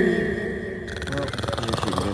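A man's voice: a drawn-out, falling-pitched vocal sound fading out in the first half second, then broken, murmured talk from about a second in.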